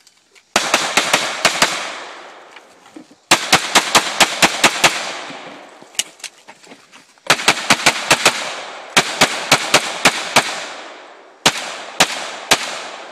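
Rapid pistol fire in a practical-shooting stage: fast strings of shots, about five a second, starting about half a second in, again at about three seconds, a single shot at six seconds, then further strings at about seven and nine seconds and two more shots near the end. Each string trails off in echo.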